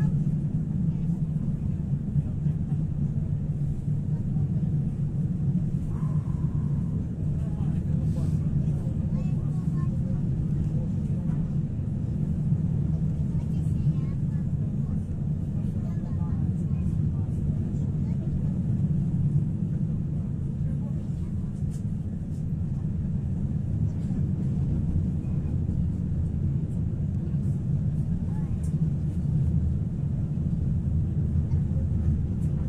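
Pesa Foxtrot tram running along the track, heard from inside the passenger cabin: a steady low rumble of wheels on rails and the running gear that holds even throughout. A brief faint tone sounds about six seconds in.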